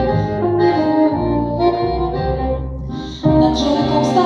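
Small acoustic band playing an instrumental passage, with accordion over acoustic guitar and double bass. The music thins and drops in level briefly, then comes back in fuller and louder just after three seconds in.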